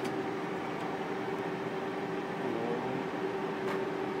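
Steady mechanical hum of projection-booth equipment, such as cooling fans, with its tones wavering briefly about two and a half seconds in. A few faint clicks from handling the projector.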